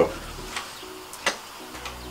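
A few light clicks and knocks from an old Stihl 011 AVT chainsaw, not running, as it is handled and turned over; the sharpest click comes about halfway through.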